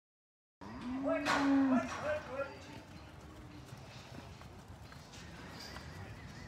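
Young black cattle mooing: one long low moo about a second in, followed by a couple of shorter calls.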